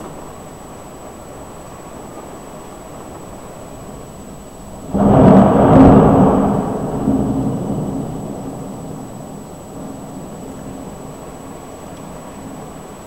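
A thunderclap about five seconds in: it starts suddenly, peaks within a second, then rumbles on and fades away over about four seconds.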